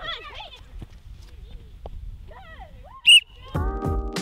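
A single short, sharp blast on a metal sports whistle about three seconds in, the loudest sound here, after a stretch of voices; music starts just after it.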